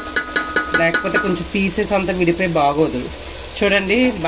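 Chicken pieces sizzling in masala in a pot while a wooden spatula stirs and scrapes them, with a person's voice talking over it.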